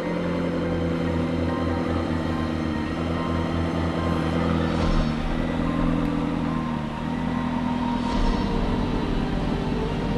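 McLaren P1 GTR's twin-turbo V8 running with a low, pulsing exhaust note that shifts pitch a couple of times, under background music.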